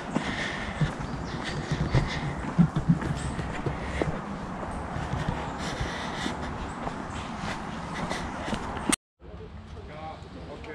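Footsteps of a walker on a dirt woodland path: irregular soft thuds and knocks, with handling noise from a handheld camera. The sound cuts out abruptly for a moment near the end.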